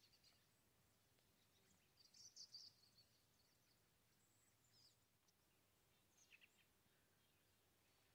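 Near silence outdoors, broken by a few faint, high bird chirps: a quick cluster about two seconds in, and a few more short notes near the six-second mark.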